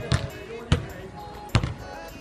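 A basketball bouncing on an outdoor hard court after a dunk: three hard bounces spread over about a second and a half.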